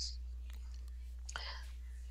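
A pause between spoken sentences: a steady low hum under faint room noise, with a brief soft hiss a little past halfway.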